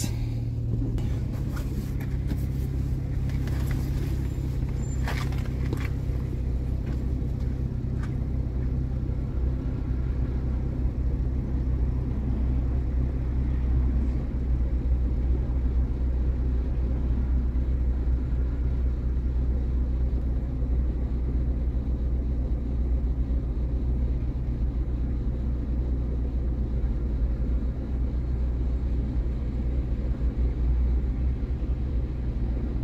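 Car engine idling steadily, heard from inside the cabin as a low, even hum. A few short clicks and knocks come in the first several seconds.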